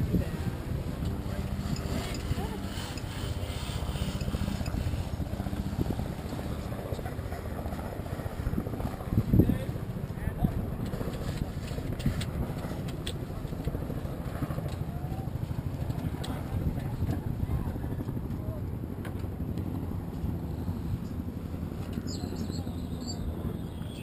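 A motorboat's engine running steadily at low speed, with water moving along the hull. A single low thump about nine seconds in.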